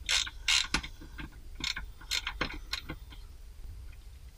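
Socket ratchet wrench clicking in short, irregular runs as a nut on the fuel filter retainer is turned down.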